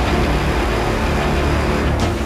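Background music for a title sequence: a dense, steady swell with a deep low end and held tones.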